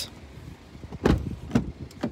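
Rear side door of a 2019 Chevrolet Blazer being opened by hand: three short dull knocks and clicks about a second in and near the end, from the latch and handling.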